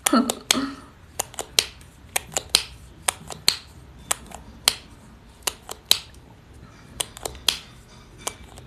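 A brief vocal sound, then a run of sharp, irregular clicks or taps, about two or three a second.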